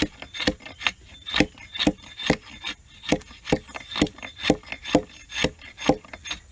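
Repeated short axe blows against a wooden stick, a little more than two a second, hewing the end of the stick into a new handle for a sledgehammer.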